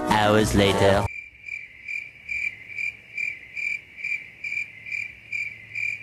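A narrator's voice says "six hours later" in the first second. Then a cricket chirping sound effect starts: a regular high chirp, about two and a half a second, standing for a long silence.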